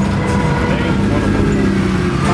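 Street traffic, with a vehicle engine running close by as a steady low hum.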